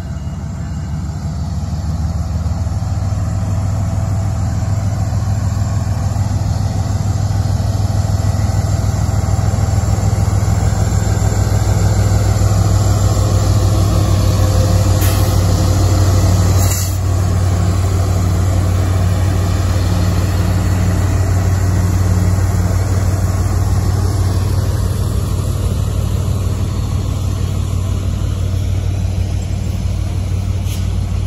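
Diesel-electric locomotives of a CSX freight train running past at low speed, a steady low engine drone that builds as the units draw close, followed by tank cars rolling by.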